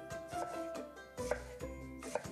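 A kitchen knife dicing ripe but firm mango on a wooden cutting board: a few light knife strokes against the board, over background music.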